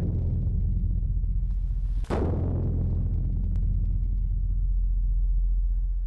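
Large Korean barrel drum (cheongo, 'heaven drum') struck with a wooden beater. Its deep boom rings on from a stroke just before, then a second stroke lands about two seconds in and its low ringing dies away slowly toward the end.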